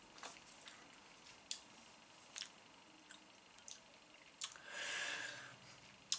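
Faint mouth sounds of someone tasting a sip of beer: several soft lip and tongue smacks, then a soft breath of about a second near the end.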